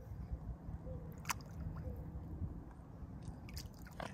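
Mute swan dabbling its bill in the shallow water and mud at the bank, feeding with soft wet squishing and nibbling sounds and a few faint clicks.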